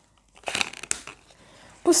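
A sheet of paper crinkling in a hand: a short run of dry crackles about half a second in, fading by the one-second mark.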